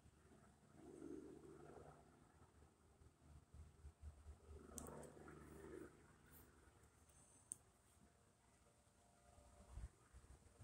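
Faint rustle of wind through tree leaves, swelling softly twice, with a couple of faint clicks.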